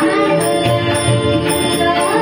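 Marathi devotional abhang performed live: a girl's singing voice over harmonium chords held steady, with pakhawaj and tabla strokes keeping a steady rhythm.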